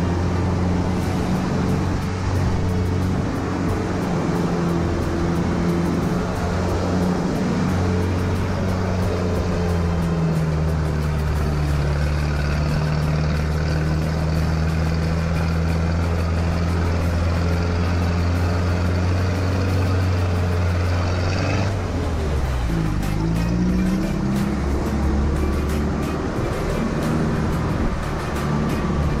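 A 4x4 jeep's engine runs steadily while it climbs a steep, rough mountain track. Its note drops about ten seconds in, then dips and rises again about three quarters of the way through, like a gear change.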